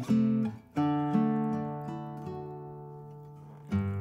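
Acoustic guitar strummed between sung lines: a chord struck about a second in rings out and slowly fades, then a new strum comes in near the end.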